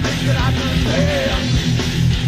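Hardcore/thrash metal music with funk influences: a full band playing loud and steady, with a sliding pitched line over the top.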